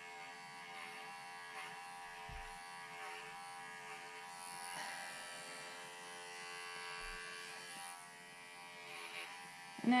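Cordless electric animal clippers running with a steady buzz while trimming an angora rabbit's wool.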